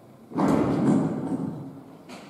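A sudden loud thump followed by a rustling noise that dies away over about a second, with a short knock near the end.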